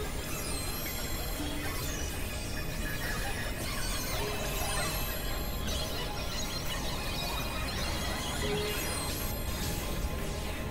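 Experimental electronic noise music: a dense, steady wash of harsh noise with brief held tones and faint pitch glides scattered through it.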